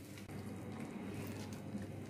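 Faint squishing of a hand kneading a moist mix of grated raw banana, potato and gram flour in a glass bowl, over a low steady hum.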